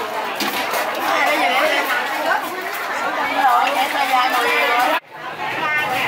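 Several people talking over one another, the mixed chatter of a busy street market. About five seconds in, the sound cuts off abruptly and then comes back.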